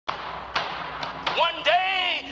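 A few sharp thumps over a hiss, then a person's voice rising and falling in pitch from about halfway through.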